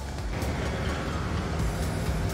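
Steady low rumble of outdoor town background noise, with faint music underneath.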